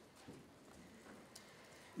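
Near silence: room tone in a pause between speech, with a faint tick or two.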